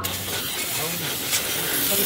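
Aerosol cleaner can spraying one long continuous hiss into the engine bay, washing off oil leaked from a burst oil pressure sensor.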